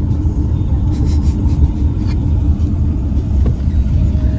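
Steady low rumble of a car driving along, heard from inside the cabin.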